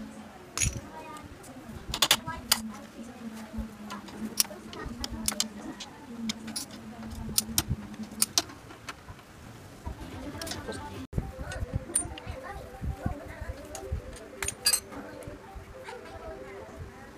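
Metal clicks and clinks of a T-wrench turning and lifting out the bolts of a motorcycle's clutch cover, over a steady low hum that stops about halfway through.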